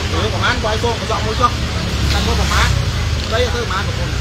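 Steady low rumble of city street traffic, with indistinct voices of people talking in the background.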